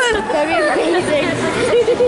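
Indistinct chatter of children's voices.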